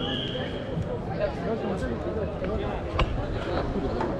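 Background chatter of many voices echoing in a large sports hall, with a short steady high tone in the first second and a single sharp click about three seconds in.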